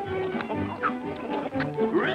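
Orchestral cartoon score playing a light tune of short notes. Right at the end a cartoon donkey's cry starts, rising in pitch.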